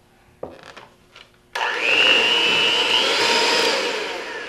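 Electric hand mixer switched on about a second and a half in, its beaters whirring through thick gingerbread batter with a steady high whine.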